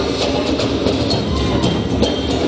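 A drum ensemble playing together on hand drums and large bass drums: a dense, continuous rhythm with sharp strikes about three times a second over a low, steady booming.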